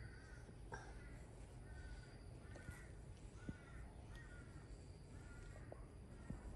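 Faint, short animal calls repeated at an even pace, roughly two a second, over a low steady hum.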